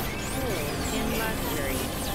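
Experimental electronic noise music: a dense low rumble under sliding, swooping synthesizer tones that glide up and down in pitch.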